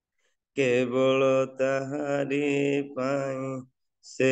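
A man singing a line of an Odia Christian hymn unaccompanied, heard through video-call audio. After a half second of dead silence the voice comes in, in three held phrases with short breaks, and it cuts off just before the end.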